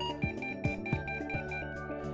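Guitar background music, with a rapid high-pitched beeping from an Inspector 910B trailer tester's fault alarm, signalling a shorted marker-light circuit. The beeping stops about one and a half seconds in.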